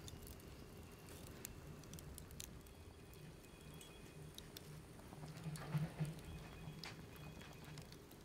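Charcoal fire burning, with faint, irregular crackles and ticks and a brief flurry of them about six seconds in.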